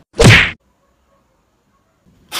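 A single short, loud hit with a falling low tone about a quarter second in, typical of an edit sound effect at a cut, then near silence.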